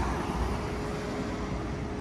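Street traffic ambience: car engine and road noise as an even, steady hum with a faint constant tone.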